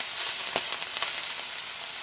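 Broccoli rapini sizzling steadily in hot olive oil in a sauté pan, with a few light clicks of metal tongs against the pan as the greens are turned.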